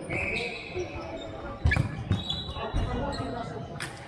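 Futsal ball being kicked and bouncing on a wooden court, with a loud thud a little under two seconds in and sharper knocks near the end. Players' shouts echo in a large sports hall.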